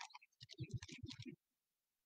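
A man's faint, low mumbling for about a second, with small clicks, between stretches of near silence.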